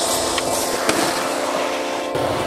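Skateboard wheels rolling over rough asphalt, a steady gritty roar with a couple of sharp clicks from the board about half a second and a second in.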